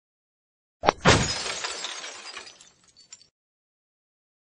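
Sound effect for an animated logo intro: a sharp click, then a loud crash that tails off over about two seconds, with a few faint tinkles near the end.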